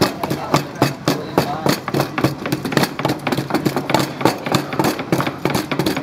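Knives chopping on wooden cutting boards and a wooden pestle pounding in a wooden mortar: a quick, irregular clatter of knocks, several a second, overlapping throughout.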